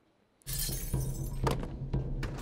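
Film soundtrack cutting in after half a second of near silence: a sudden crashing burst of noise that fades quickly, over a low, steady music drone, with a couple of sharp clicks.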